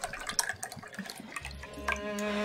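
Liquor poured from a bottle into a small cup: a thin, uneven trickle.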